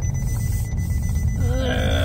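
A car's trunk-ajar warning beeping as a thin high tone over road rumble inside the moving car: the tailgate, damaged in a rear-end collision, cannot be shut properly. A woman's voice sounds briefly near the end.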